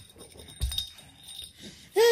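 Faint clinks and light knocks from toddlers' toy sound blocks as the top block is lifted off a small tower, with a soft low thump about half a second in.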